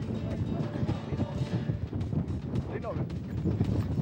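Hoofbeats of two horses cantering over grass, with wind noise on the microphone.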